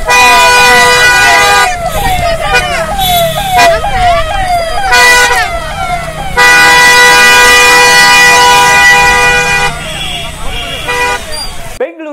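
Electronic siren of a police escort convoy sounding in quick repeated rising-and-falling sweeps, about two a second, alternating with long steady horn blasts. It cuts off abruptly near the end.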